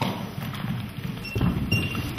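Irregular low thumps and knocks over a rumbling room noise in a large, echoing hall, with a faint short high tone in the second half.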